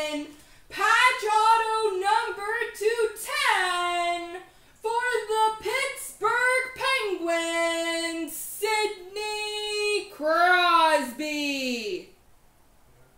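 A high voice singing a melody alone, with long held notes and pitch slides; it cuts off suddenly at the end.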